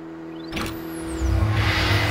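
Electronic intro sting with a held synth note, sweeping whooshes and a sharp hit about half a second in. A low rumble swells from a little past one second and builds toward the logo reveal.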